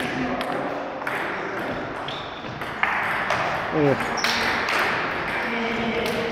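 Table tennis rally: the ball clicks sharply off the paddles and the table in an irregular back-and-forth exchange.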